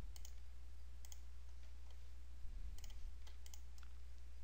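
Computer mouse clicking, a handful of scattered clicks, over a steady low hum.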